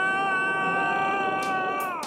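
A cartoon dog character's long, high cry of shock on hearing he is bankrupt: one held note, rising at the start, steady in pitch, then dying away near the end.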